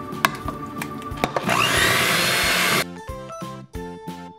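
Hamilton Beach electric hand mixer starting up with a rising whine and running for a little over a second in a thick brownie batter, then cutting off abruptly. Background music with a steady beat plays throughout, and there are two clicks before the mixer starts.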